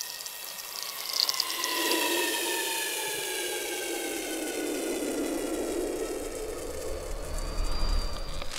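A sustained whine slowly falling in pitch over a rushing noise that swells after about two seconds, with brief crackles about a second in and a low rumble near the end, like an added sound-design whoosh.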